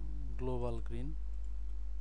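A man's voice sounds briefly about half a second in, then a single computer mouse click, over a steady low hum.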